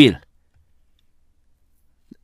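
A man's voice finishing a word, then near silence: room tone.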